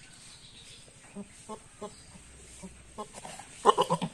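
A series of short, pitched farmyard animal calls, a few spaced apart from about a second in, then a louder quick run of calls near the end.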